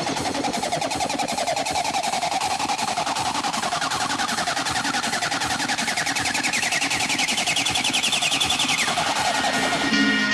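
Hardcore industrial electronic music at 160 BPM: a dense, very rapid stuttering buzz with a tone that rises slowly over several seconds and drops away about nine seconds in.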